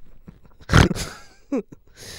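Two men laughing hard into microphones: a loud burst of laughter about two-thirds of a second in, then a short falling yelp of laughter near the end.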